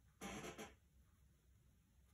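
Near silence: quiet room tone, broken once by a brief soft noise lasting about half a second, a quarter second in.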